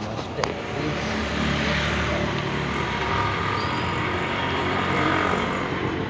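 Steady street background noise, like road traffic, with one sharp click about half a second in.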